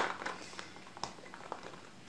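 Faint, scattered light clicks of small round peppers and garlic shifting against the glass as a packed jar is tilted and rocked by gloved hands.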